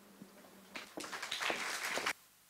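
Brief audience applause, starting under a second in, that welcomes the act just introduced.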